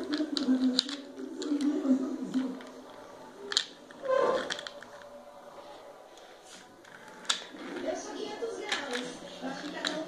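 A child's voice murmuring without clear words, with a few sharp clicks from a plastic toy car being handled.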